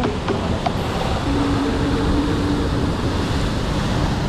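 Heavy surf washing and breaking against a rocky shore, with wind rumbling on the microphone. A faint steady tone sits over it for about a second and a half near the middle.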